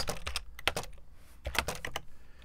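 Typing on a computer keyboard: two short runs of irregular key clicks with a brief lull between them, as a short line of code is typed.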